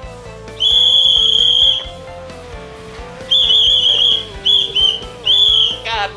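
A whistle blown in loud, shrill blasts: one long blast of about a second, then four shorter blasts in quick succession in the second half. Background music with a held note runs underneath.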